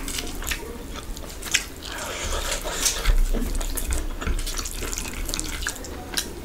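Bare fingers kneading rice into chicken curry gravy on a plate: a steady run of small wet clicks and squishes.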